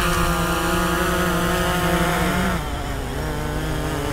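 Quadcopter camera drone's propellers buzzing as it hovers low, being brought in to land; the pitch drops slightly and the sound eases about two and a half seconds in as it comes down toward the pilot's hand.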